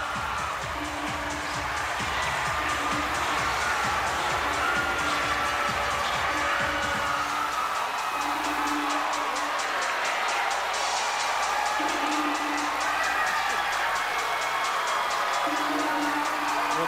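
Stage music playing over an audience cheering and applauding, with the crowd noise fuller in the first half.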